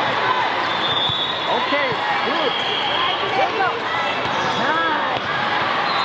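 Volleyball rally: sneakers squeaking repeatedly on the court surface and the ball being struck, over a constant, echoing din of voices filling a large hall.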